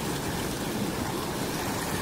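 Shallow mountain stream pouring and splashing over rock: a steady rushing of water.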